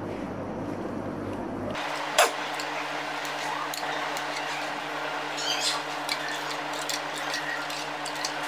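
Metal ladle stirring a cassava-starch slurry in a small glass bowl, with one sharp clink of ladle on glass about two seconds in and lighter ticks after, over a steady hiss and, from about two seconds in, a low hum.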